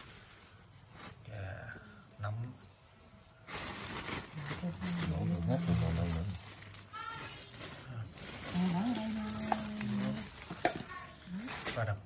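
Low, indistinct human voices with a drawn-out held vocal sound a little past the middle. Over them runs a steady hiss that starts suddenly a few seconds in.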